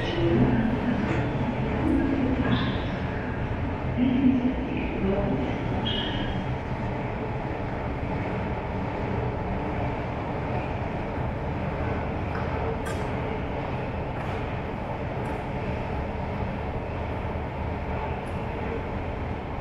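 Steady low rumble of an underground Métro station, with faint voices in the first few seconds.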